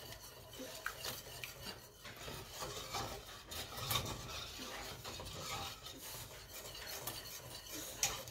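Wire whisk stirring a thick white sauce of butter-flour roux and chicken stock in a stainless steel saucepan: soft, faint scraping against the pan, with a light click now and then.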